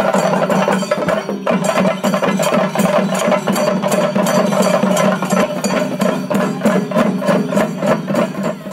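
Chenda melam: a group of chenda drums beaten fast with sticks, a loud, dense run of sharp strokes over a steady ringing tone.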